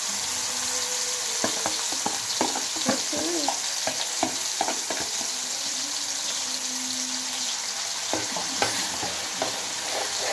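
Onion, tomato, ginger and garlic masala paste sizzling as it is spooned into hot oil in a karahi: a steady frying hiss, with repeated sharp knocks of the metal spoon through the first half and again near the end as the stirring begins.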